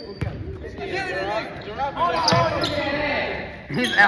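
Basketball being dribbled on a hardwood gym floor, the bounces echoing in the large hall, with players' voices calling across the court.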